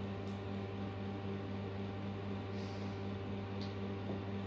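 Hair dryer running steadily, a low motor hum under an even hiss of blown air, aimed at a freshly painted cardboard sign to dry the paint.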